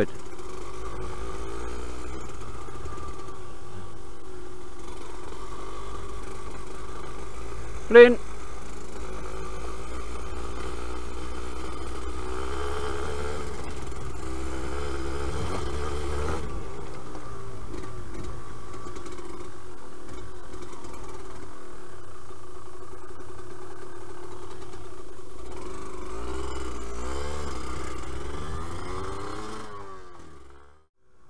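Yamaha DT125LC YPVS two-stroke single-cylinder engine running under way at fairly steady revs that rise and fall slightly as the bike rides a rough gravel track. The sound fades out near the end.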